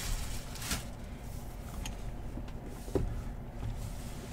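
Faint handling noises of a cardboard hobby box being moved and set down on a table, with a soft knock about three seconds in.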